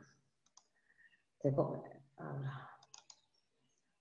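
Two short, muffled snatches of speech with a few faint computer clicks between them as a screen share is started.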